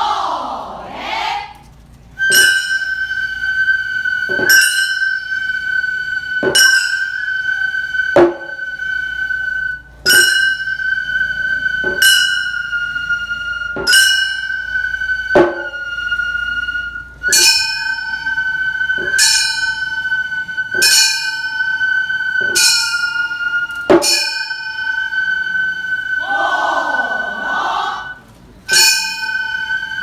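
Gion-bayashi music: small bronze kane hand gongs struck in the clanging 'konchikichin' pattern, the strokes often in quick pairs and each left ringing, over a steady high held note. A swooping sound rises and falls near the start and again a little before the end.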